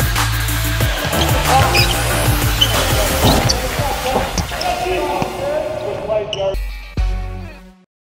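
Bass-heavy electronic music drops out about a second in, giving way to basketball practice on a hardwood court: sneakers squeaking, a ball bouncing and players' voices. A deep boom near the end fades to silence.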